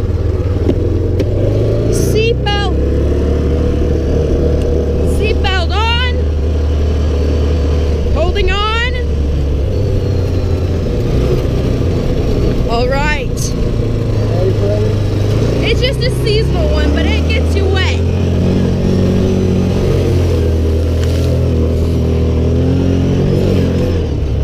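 Side-by-side UTV engine running under load while driving in four-wheel drive, a steady low drone that steps up and down in pitch with the throttle. Short high squeaky sounds break in every few seconds.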